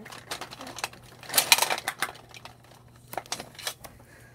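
Colored pencils clattering and clicking against each other as a hand rummages through them to draw one out: a run of quick small clicks, loudest in a dense rattle around the middle, with a shorter flurry near the end.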